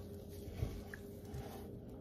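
Faint squishing of a hand working a wet flour-and-buttermilk dough in a bowl, with a few soft low thuds as the hand presses into it.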